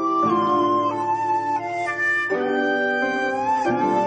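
Instrumental background music: a slow, held melody line over sustained chords, the notes changing every second or two.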